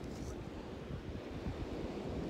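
Steady low wind rumble on the phone's microphone, mixed with ocean surf washing in the background.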